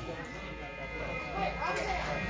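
Steady electric hum and buzz from the stage amplifiers in a lull, with faint crowd chatter.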